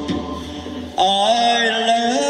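Live rock band music: a brief lull with a fading ring, then about a second in the band comes back in on a held chord under a long sung note that slides up and holds.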